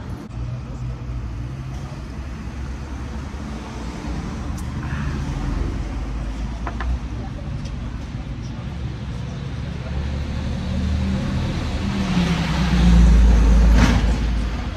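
Road traffic passing on the street: a steady rumble of engines and tyres that swells to its loudest near the end as a vehicle passes close by.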